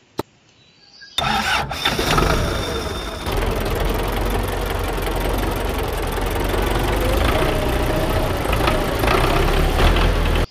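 A push button clicks once, then about a second later a recorded tractor engine sound starts up and runs steadily at idle, loud and full-range, before cutting off suddenly.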